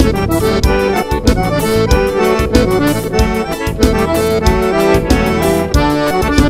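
Live dance band playing an instrumental passage of gaúcho-style dance music, an accordion carrying the melody over a steady beat.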